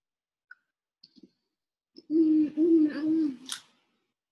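A woman humming three short closed-mouth notes on a steady pitch about halfway through, after a few faint clicks, with a sharp click just after the humming.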